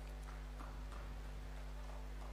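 Low, steady electrical hum from a microphone and PA system, with a few faint ticks.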